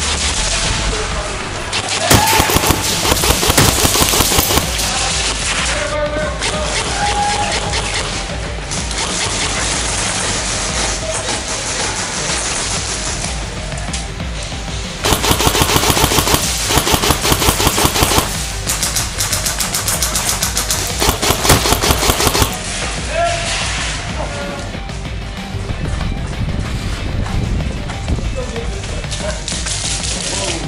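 Classic Army DT4 double-barrel airsoft electric rifle firing rapid full-auto bursts: a short burst about two seconds in, then longer strings of fire from about 15 to 22 seconds in.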